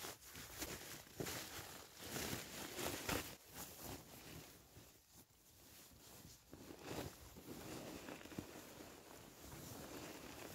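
Nylon shell of a Rab Ascent 900 down sleeping bag rustling in irregular bursts as someone climbs in and settles into it, with a quieter lull about halfway through.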